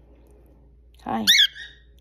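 Cockatiel giving one short, high-pitched chirp that wavers in pitch, about a second in, straight after a spoken "hi".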